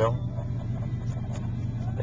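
Ford F-150's V8 engine idling, a steady low hum heard from inside the cab.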